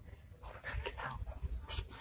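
Stifled laughter from a person muffled behind a hand: a string of short, breathy bursts starting about half a second in.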